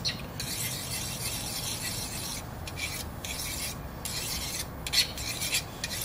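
Fillet knife being sharpened on a hand-held sharpening rod: repeated rasping strokes of steel drawn along the rod, with short pauses between them and a few louder strokes near the end.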